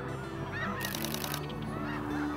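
A flock of snow geese calling, many overlapping honks, with a brief rapid run of clicks about a second in.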